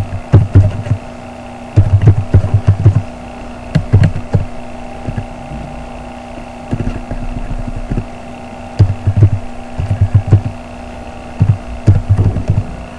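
Typing on a computer keyboard: keystrokes come in short bursts with pauses between them, over a steady electrical hum.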